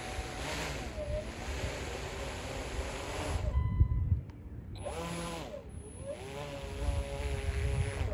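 R/C airboat's propeller motor whining, its pitch rising and falling as the throttle changes. About halfway through the whine drops away for about a second under a louder low buffeting rumble, then returns, climbing in pitch.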